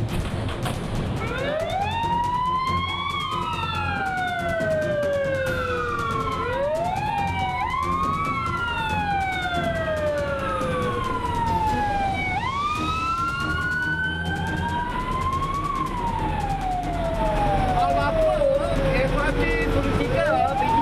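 Fire engine siren wailing, each rise in pitch quick and each fall slow, with two wails overlapping out of step, over a steady low rumble.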